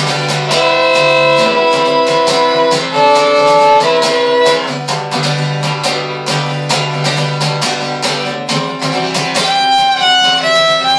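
Acoustic guitar strummed in a steady rhythm, with a fiddle playing long bowed notes over it. The fiddle drops out around the middle and comes back in near the end.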